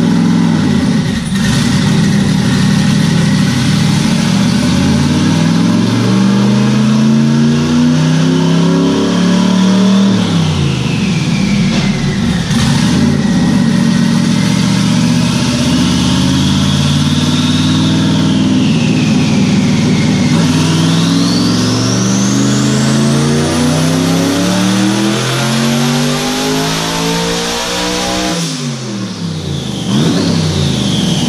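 Twin-turbo, resleeved 427 LS V8 of a C5 Corvette at full throttle on a chassis dyno, run at up to 23 psi of boost. The revs climb, fall back about ten seconds in, and climb again; in the last long climb a high turbo whine rises into a whistle. Near the end the throttle shuts and the revs fall away.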